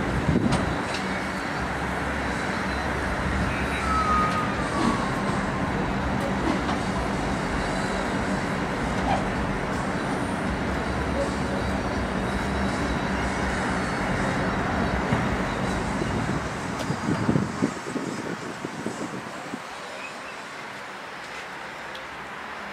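Turbocharged two-stroke Detroit Diesel 8V71T V8 idling steadily under background voices. About sixteen seconds in, the low engine sound drops away and a few knocks and thumps follow.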